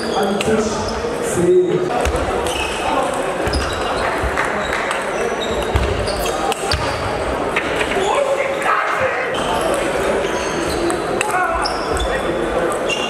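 Table tennis balls clicking off bats and tables in a sports hall where several games are in play at once, over background chatter of many voices.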